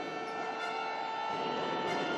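A steady, held horn-like tone of several pitches over the general noise of a basketball arena; the lowest pitch drops out a little past halfway.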